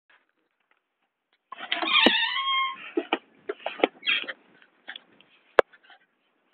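A high-pitched cry held on one pitch for about a second, starting about one and a half seconds in, followed by sharp clicks and short bursts of rustling handling noise.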